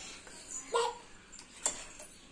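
A child's brief hummed "mm" just under a second in, followed a moment later by a short sharp click, over faint room hiss.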